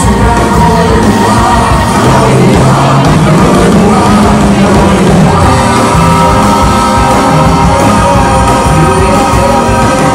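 Live soul band playing loudly, with male voices singing over brass, electric guitars and keyboards. From about five seconds in the band holds long sustained notes, with some shouting over the music.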